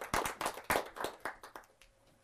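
Audience applauding, the separate claps thinning out and stopping about a second and a half in.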